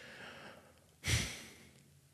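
A person sighing: one short, breathy exhale about a second in, close to the microphone.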